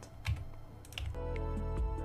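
A few sharp computer keyboard and mouse clicks. A little over a second in, background music with held notes begins.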